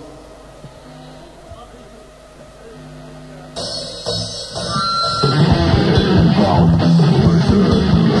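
Live heavy rock band starting a song: a few quiet, held electric guitar notes, then about five seconds in the drums and distorted guitars come in loud.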